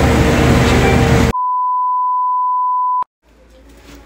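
Steady store background noise with a low hum, cut off about a second in by a single steady electronic beep, a pure high tone held for almost two seconds on dead silence, ending in a click. Faint room tone follows.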